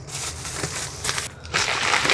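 Plastic packaging crinkling and rustling as it is handled, first softly, then louder and denser from about one and a half seconds in.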